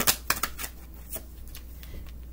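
A deck of astrology reading cards being shuffled by hand: a quick run of sharp card clicks in the first half second or so, then a few scattered clicks as a card is drawn.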